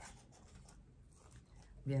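Faint scratching and small clicks of fingers picking at the sticky tape that holds a plastic ribbon spool shut.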